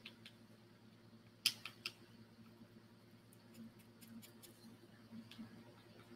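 Faint handling sounds of a small paintbrush being dry-brushed over a wooden heart cutout: a few light clicks, a cluster of them about one and a half seconds in, then soft brushing scuffs.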